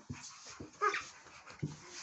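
A small child imitating a puppy, giving one short whimper about a second in, with soft knocks of movement on the floor.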